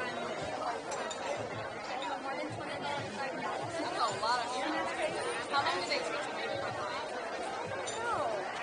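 Chatter of a crowded restaurant dining room: many overlapping conversations blend into a steady babble. A nearer voice stands out now and then in the middle.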